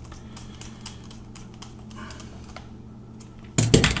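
Small screwdriver driving screws into the plastic case of an electric salt and pepper grinder: many faint, quick ticks and clicks over a steady low hum. A short laugh near the end.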